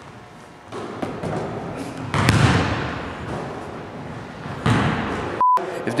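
A basketball bouncing and hitting hard in a gym: three echoing knocks, the loudest about two seconds in. A short electronic beep near the end.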